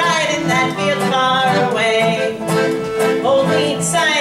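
Piano accordion and guitar playing a folk tune together, with sustained accordion chords over strummed guitar.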